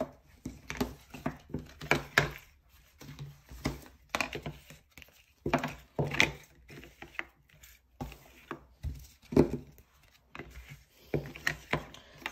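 Small cardboard board books being set down and shuffled about on a table: irregular knocks and taps with brief scraping between them.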